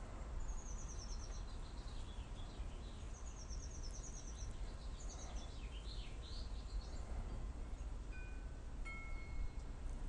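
Birds singing: several quick, high-pitched descending trills, each about a second long, over a steady low background rumble. Near the end come two brief, clear, steady tones at different pitches.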